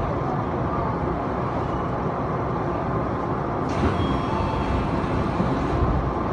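Odakyu commuter train running into an underground station, heard from inside the car: a steady rumble of wheels and running gear. A brighter hiss joins about two-thirds of the way through.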